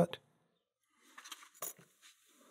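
Faint handling of a brass lock lever and its wire spring, with one light click a little over a second and a half in as the part is handled or set down.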